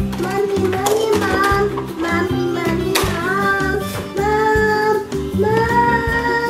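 Background music: a song with a sung melody over a bass line that changes notes in a steady rhythm.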